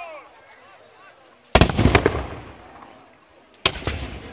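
Black-powder muskets firing in ragged volleys: several shots cracking almost together about a second and a half in, each volley dying away in a long echo, and another volley just before the end.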